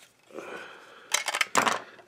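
Plastic building bricks of a small Zuru Max castle model clicking and rattling as the model is handled and turned over, with a soft rustle first and a quick run of clicks in the second half.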